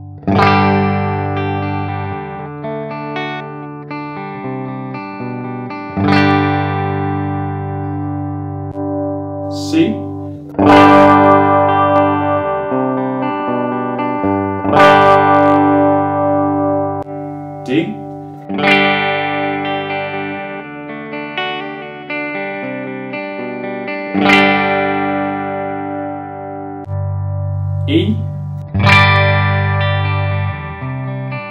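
Electric guitar played through a Cuvave Cube Sugar multi-effects pedal with its IR cabinet simulation on. About seven chords are strummed a few seconds apart and left to ring. Between some of them there are short squeaks of fingers sliding on the strings.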